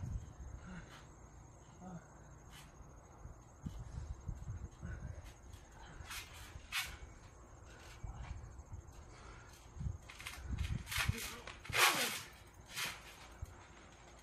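Thumps and shuffling of people moving and landing on a trampoline mat, with several sharper hits and scuffs in the second half, the loudest about two seconds before the end.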